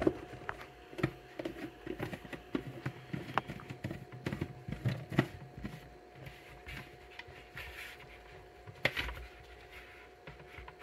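Plastic lid of a half-gallon drink cooler jug being pressed and twisted into place: a run of irregular small clicks and scrapes, with a sharper click near the end.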